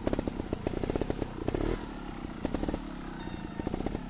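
Scorpa trials motorcycle engine running at low revs, an uneven stream of pops as the bike moves slowly over the section.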